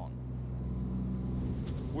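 Motorboat engine running with a steady low hum over the rush of water along the hull. About a second and a half in, the steady hum gives way to a rougher noise.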